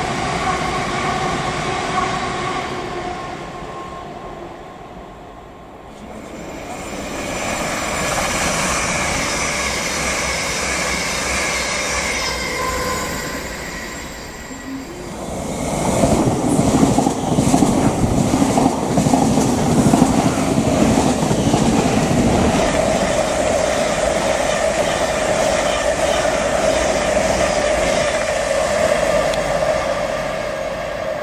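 Electric multiple-unit trains passing through a station: first a traction-motor whine that fades away over the first few seconds, then another train's whine building up, then a Class 700 electric train rushing close past the platform at speed from about halfway in, its wheels and body loud, settling into a steady motor whine near the end.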